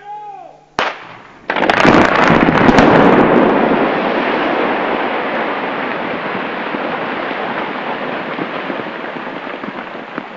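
Rock blasting on a construction site: a sharp crack about a second in, then a loud explosion that dies away slowly in a long rumble of settling debris.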